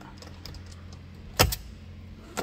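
A sharp double click, a plastic switch or part of the overhead console by the rear-view mirror pressed by hand, about one and a half seconds in, over a steady low hum in the car's cabin.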